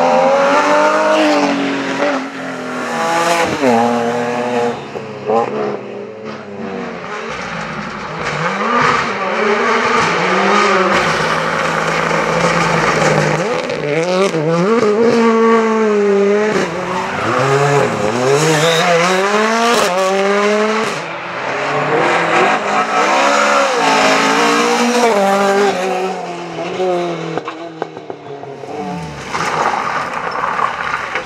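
Rally cars passing one after another at stage speed, their engines revving hard, climbing and then dropping sharply at each gear change or lift, again and again.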